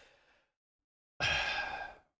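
A man sighs: a breathy, drawn-out 'uh' lasting under a second, starting a little past halfway, after a faint breath at the start.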